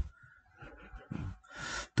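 A short thump at the start, then a man's quiet breathing that ends in an audible intake of breath just before he speaks again.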